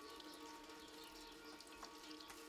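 Faint water splashing and trickling as hands are washed at a basin, under a faint steady hum; otherwise near silence.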